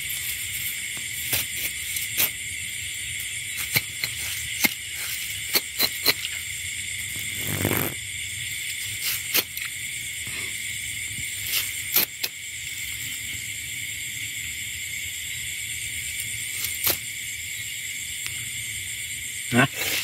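A steady, high-pitched chorus of night insects. Scattered sharp clicks sound over it, with a brief louder rustle about eight seconds in.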